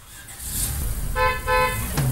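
A low car-engine rumble, then about a second in two short toots of a car horn.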